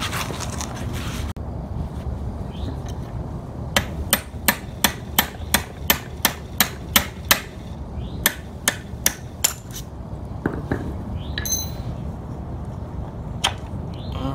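Hammer striking a roll pin punch to drive the roll pin out of the shifter cup on a T56 transmission's shift rod. The sharp metal taps come in a quick run of about a dozen, then after a short pause a run of five, then a few single strikes, one of them ringing.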